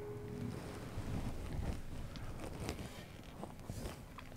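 The last of an E chord on a three-string cigar box guitar fading out in the first half second, then faint low rustling and handling noise with a few soft ticks.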